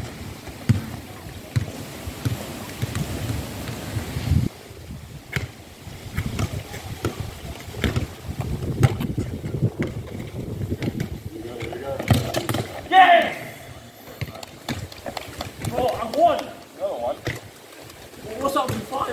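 Players' voices calling out on an open court, with one loud call about thirteen seconds in and more voices near the end, over low rumbling noise on the microphone and scattered short knocks.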